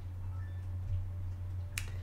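A steady low hum under faint hiss, with a single sharp click near the end.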